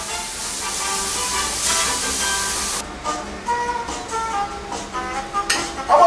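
Meat sizzling in a frying pan over background music. The sizzle stops suddenly about three seconds in, and a few sharp clicks follow.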